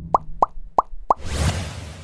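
Four quick pop sound effects, about a third of a second apart, each a short upward-bending blip, as the social media icons pop onto an animated end-card graphic. A whoosh follows about two-thirds of the way in.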